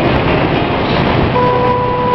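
Motorcycle running along a road with engine and wind rumble, then its horn sounds one long beep starting about a second and a half in.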